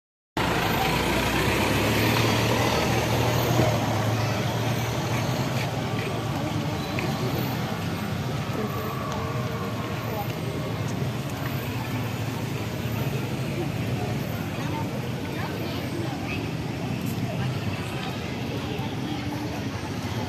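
SUVs of a motorcade driving slowly past at close range, engines running with a steady low hum, loudest in the first few seconds. Crowd chatter runs underneath.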